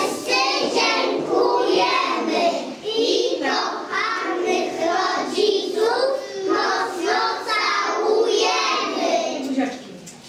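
A group of young children singing a song together, their voices stopping just before the end.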